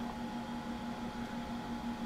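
Steady background hum with a faint low tone and a faint higher tone underneath, the room and equipment noise of a workshop or lab bench.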